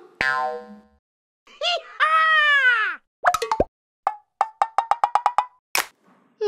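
Cartoon-style comedy sound effects. A click and a ringing boing come first, then a drawn-out tone that rises and falls. A run of about ten quick plops follows, speeding up, and a sharp click comes near the end.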